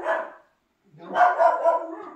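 A dog whining in two drawn-out stretches, cut by a short silent gap about half a second in.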